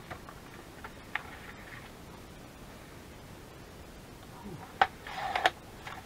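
A few light clicks and taps as paper is set on a sliding paper trimmer, then a sharp click near the end.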